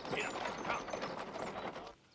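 Horse-drawn carriage passing on a street: hooves clip-clopping and the carriage's wheels and fittings rattling in a dense, steady clatter that stops abruptly just before the end.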